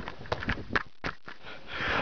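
A person laughing quietly in short breathy puffs through the nose, a snicker of about four bursts a second that stops briefly just after one second in.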